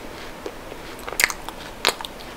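Close-miked chewing of chocolate with crunchy bits, closed-mouth: soft clicky chews, with two sharp crunches about a second in and near the end.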